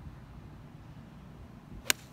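Golf iron striking a golf ball: a single sharp crack of impact near the end, over a low steady rumble.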